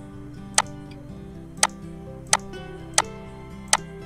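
Five sharp computer mouse clicks at uneven intervals, well under a second apart, louder than everything else, over steady background music.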